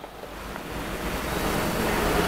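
A steady, even hiss of background noise that grows gradually louder, with no distinct strokes or tones.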